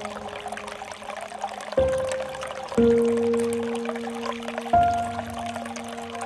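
Water pouring steadily from a bamboo spout into a pool, under slow, soft music: single notes start sharply every second or two and are left to ring.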